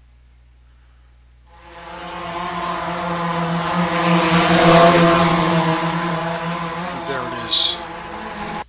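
A motor's steady droning hum with a pitched whine, starting about a second and a half in, swelling to a peak around the middle and then easing off. It comes from the audio track merged into the rendered video, played back on the computer.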